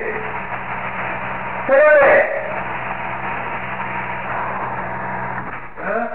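A small engine running steadily, with an even low hum under a constant rushing hiss. A brief voice cuts in about two seconds in.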